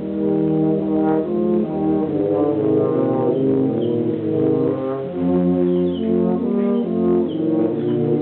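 Tuba and euphonium quartet playing a Christmas arrangement: several brass notes held together in chords that change every half second or so, low tuba parts beneath the higher euphonium lines.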